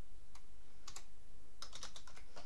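Computer keyboard keys being pressed while typing: a few separate keystrokes, then a quicker cluster of presses near the end.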